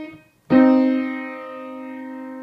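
Yamaha piano playing a minor third: the upper note of the melodic interval dies away, then about half a second in both notes are struck together as a harmonic minor third and held, slowly decaying.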